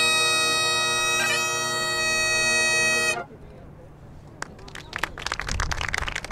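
Great Highland bagpipes holding one steady note over the drones, with a short grace-note flick about a second in, cut off abruptly about three seconds in. Quieter scattered handclaps follow near the end.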